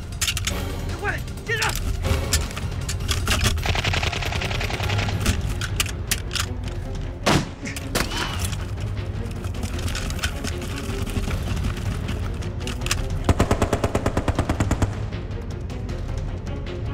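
Battle sound effects of gunfire: scattered rifle shots and machine-gun fire over a dramatic music score, with a fast machine-gun burst about three-quarters of the way through.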